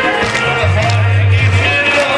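Loud kirtan devotional music: voices singing over a steady low bass, with sharp percussive strikes.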